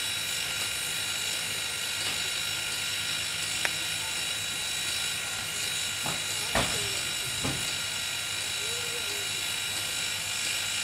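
Reading & Northern 425, a 4-6-2 Pacific steam locomotive, standing under steam with a steady hiss. A sharp click comes a little before the middle, then a few metallic knocks, the loudest about six and a half seconds in.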